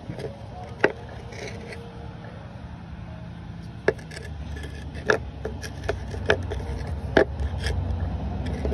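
Rocks being handled on a wooden tabletop: several sharp clicks and knocks as stone meets wood, with some scraping. A low rumble grows louder in the second half.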